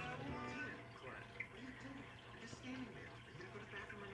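Faint, indistinct dialogue from a television programme playing in the room, over a steady low hum.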